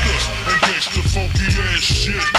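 Screwed-and-chopped Houston hip hop: a rapper's vocal over a slowed-down beat with deep, steady bass and drum hits.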